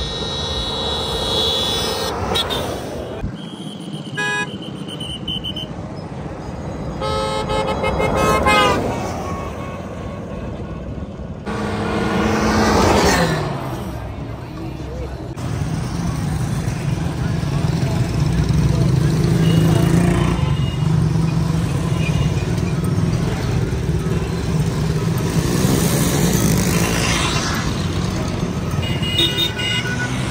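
Vehicle horns tooting several times, with motor-vehicle engines and voices. From about halfway through, a steady low drone of engines from busy street traffic.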